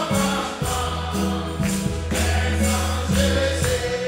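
Gospel song sung by many voices together over long, held bass notes, with a steady beat of about two strokes a second that includes a tambourine.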